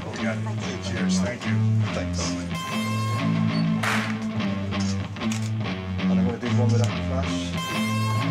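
Rock music with guitar over a bass line of held notes that change every half second or so.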